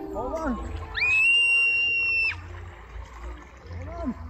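A child's long high-pitched squeal that rises, then holds steady for over a second, starting about a second in. Short excited vocal exclamations come before and after it.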